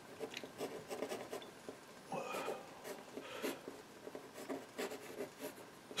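A pencil drawing quick, quiet, scratchy strokes on a painting board prepared with PVA glue and a thin coat of burnt sienna.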